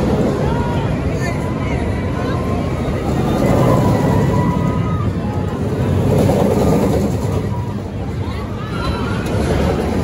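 Munich Looping travelling roller coaster running its trains around the track: a steady loud rumble that swells a little as the trains pass, mixed with fairground crowd voices.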